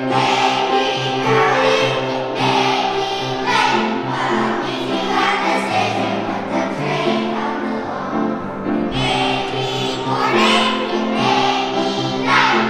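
Children's choir singing with piano accompaniment.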